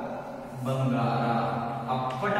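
A man's voice drawing out words at an even pitch in a sing-song, chant-like way, holding one long sound from about halfway through.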